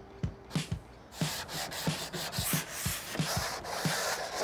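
Wooden porch swing slats being sanded by hand: sandpaper rasping in quick back-and-forth strokes, about three a second, growing steadier and fuller about a second in.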